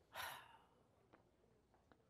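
A woman's short, sharp breathy exhale, a huff, near the start, followed by a couple of faint ticks.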